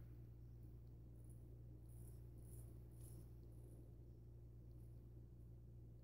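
Faint, short scrapes of a Parker SRB shavette with a Shark half blade cutting stubble along the jawline, going against the grain, mostly in the first few seconds. A steady low hum runs underneath.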